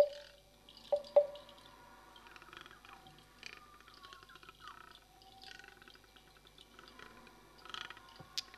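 Hollow, pitched wooden knocks from a tubular wood block struck with a mallet: one at the start and two close together about a second in, all ringing at the same pitch. After them comes a quiet texture of soft dripping-like clicks and faint sliding tones.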